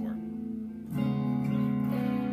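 Stratocaster-style electric guitar through an amp: one strummed chord rings and fades, then the next chord is strummed about a second in and left ringing.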